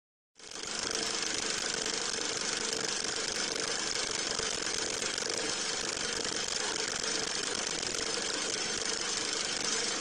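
Film projector running: a steady mechanical whir and clatter that starts about half a second in.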